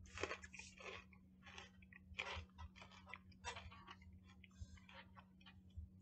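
Faint, irregular crunching and chewing of a mouthful of seasoned, candy-coated peanuts.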